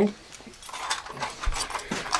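Light, irregular clicks and rattles of small objects being handled as a box of staples is picked up.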